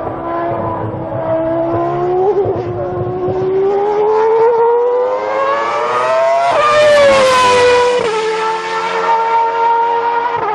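Racing car engine at high revs, its pitch climbing steadily for about six seconds; the car passes close by about seven seconds in, the pitch drops, and the engine runs on at a steady pitch.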